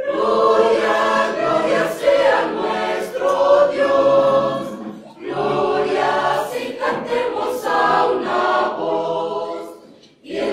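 A church choir of mostly women's voices singing a hymn, in two phrases with a short breath pause about five seconds in.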